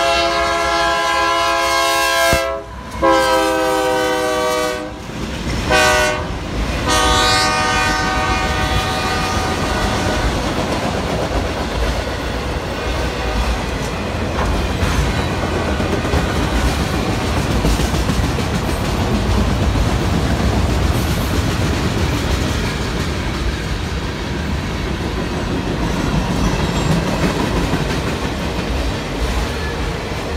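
CSX AC4400CW lead locomotive's horn sounding the grade-crossing signal, long, long, short, long, the last blast fading out about ten seconds in. It is followed by the steady rumble and clickety-clack of autorack freight cars passing at speed.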